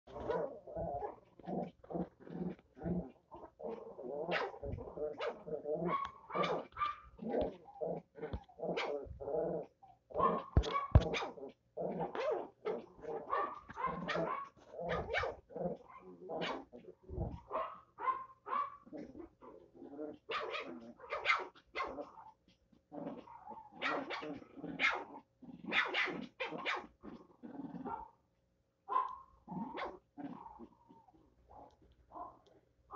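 Two small dogs play-fighting, with a near-continuous run of short barks and growls, several a second, pausing briefly near the end.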